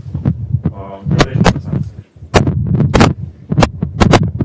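A man's lecture speech, muffled and broken up, over a loud low electrical hum, with sharp clicks scattered through it.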